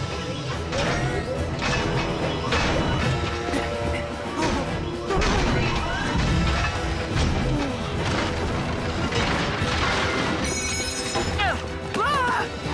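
Cartoon action sound effects: repeated heavy crashes and booms of a giant robot stomping and smashing, over a music score.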